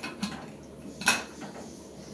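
Metal pressure cooker lid being secured by its handles: a light tick just after the start, then one sharper metallic clack about a second in.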